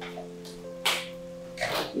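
Soft background music holding sustained low chords, with a short sharp hiss about a second in and another near the end.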